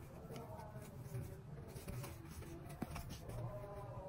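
Faint room sound with distant, faint voices in the background and a single light click about three seconds in.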